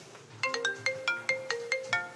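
Telephone ringing with a melodic ringtone: a quick tune of short pitched notes stepping up and down, starting about half a second in, the sign of an incoming call.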